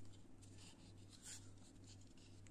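Near silence: faint rubbing and scraping of fingers handling a hard Kydex knife sheath, with one slightly louder scrape just past the middle.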